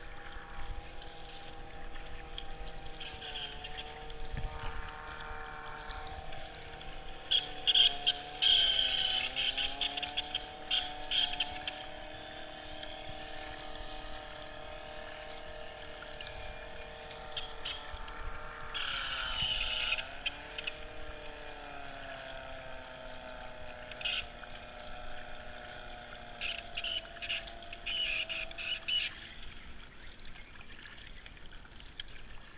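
A powerboat's engine and gearbox whining steadily; twice the pitch sags and climbs back, the sign of what seems to be a slipping gear.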